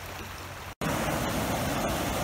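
Steady rushing of river water; less than a second in, an abrupt cut brings a louder, fuller rush of water tumbling over small rocky falls.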